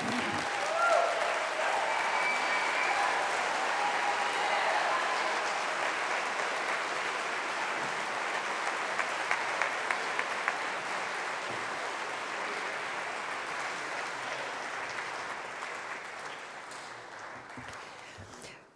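Audience applauding after a speech, the clapping slowly dying away near the end.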